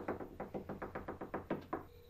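Rapid, urgent knocking on a door by hand: a long run of quick, even knocks, about six a second, that stops shortly before the end.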